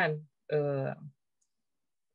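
A woman's voice: the end of a word, then a held hesitation sound ('uhh') lasting about half a second, then silence.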